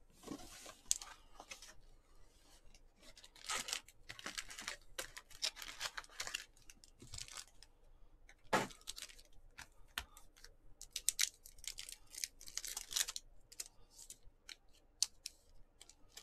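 Trading-card box and its pack wrapping being torn open and the cards handled: a run of irregular tearing, crinkling and rustling, with a few sharper rips.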